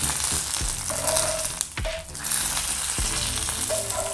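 Hot tadka oil with cumin, black peppercorns and curry leaves sizzling steadily as it is spooned from a frying pan onto yogurt. A couple of light clicks come partway through.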